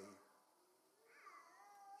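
Near silence: room tone in a pause, with one faint, short, wavering high-pitched cry about a second in.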